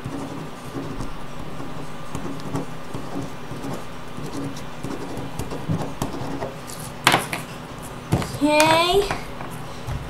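Ballpoint pen scratching faintly across paper on a wooden table. About seven seconds in comes a sharp knock as the pen is put down, followed by a short rising vocal sound.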